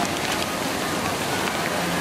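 Crinkling and crackling of a foil-lined paper hot dog bag being handled and pulled open, with a few sharper crackles over a steady background hiss.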